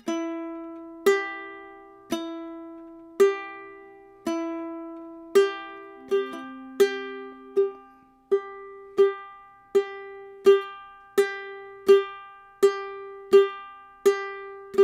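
Ukulele played as a slow clawhammer exercise: single plucked notes ringing out about once a second, then from about six seconds in, quicker pairs of notes, a downstroke on a string followed by the thumb plucking the top string.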